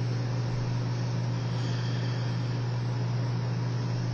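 A steady low hum with an even hiss beneath it, unchanging throughout: background room tone with no distinct sound event.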